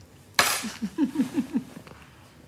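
A short burst of laughter: a sudden breathy outburst, then a quick run of about six short 'ha' notes, each falling in pitch.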